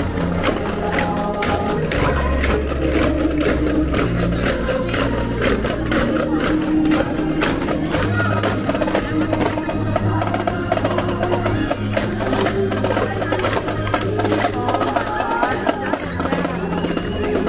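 Christmas parade music with a marching drum rhythm over steady bass notes.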